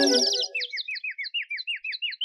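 In a Tamil film song, the singing and accompaniment stop at the start and a rapid run of short, downward-sliding bird-like chirps follows, about seven a second, with nothing else under them.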